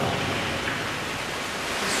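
Indoor wall-mounted waterfall: a thin sheet of water pours from a ledge into a pool below, with a steady rushing sound.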